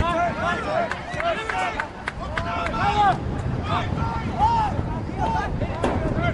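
Voices of soccer players and spectators shouting short calls across the pitch, over steady crowd and outdoor noise, with a few sharp knocks from the ball being kicked. A laugh comes near the end.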